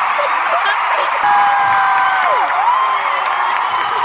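A large arena crowd cheering and screaming, with one voice holding a high whoop that slides down about two seconds in.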